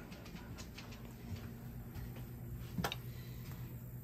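Quiet interior with a faint steady low hum, a few soft ticks and one sharper click about three seconds in.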